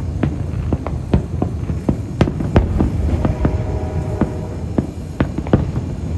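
Aerial fireworks shells bursting in a rapid, irregular string of bangs, about two to three a second, over a continuous low rumble of overlapping booms. The sharpest reports come a little over two seconds in.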